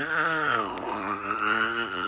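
A man's long, drawn-out groan, one unbroken vocal sound wavering slowly up and down in pitch without forming words, a sign of distress.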